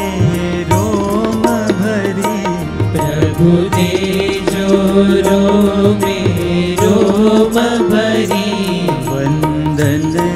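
Devotional bhajan sung by male voices in a slow, sustained melody, accompanied by a harmonium's held chords and light, regular percussion strokes.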